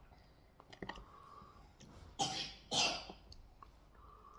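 A man coughing twice in quick succession, a little over two seconds in, between a few faint mouth clicks from eating.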